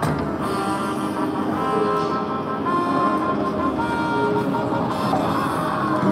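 Slot machine's bonus-win music: a tune of held electronic notes changing pitch every half second or so, played as the machine finishes a free-spins bonus with eight orbs collected, over busy casino noise.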